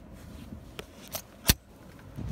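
Handling noise from the recording phone being picked up and moved: light rubbing and a few clicks, the loudest a single sharp click about a second and a half in.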